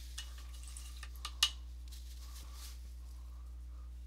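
Paintbrush working oil paint on the palette: soft scraping with a few light clicks and taps, the sharpest about one and a half seconds in. A steady low hum runs underneath.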